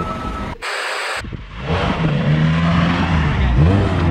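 Vauxhall Cavalier's engine running steadily as the car drives, its pitch rising slightly near the end. A short hiss comes about half a second in.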